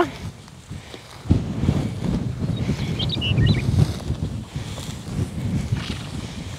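Wind buffeting the microphone, a low uneven rumble that starts about a second in, with a few short high chirps about three seconds in.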